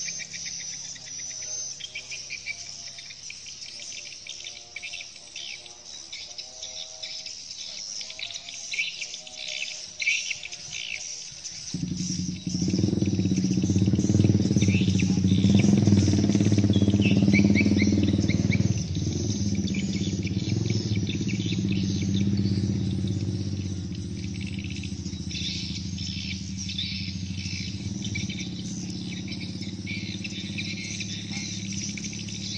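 A flock of swiftlets giving dense, rapid high twittering chirps throughout. About twelve seconds in, a louder steady low rumble starts suddenly and runs on under the chirps, easing somewhat after about nineteen seconds.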